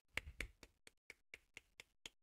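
Short, sharp clicks made with the hand, evenly spaced at about four a second.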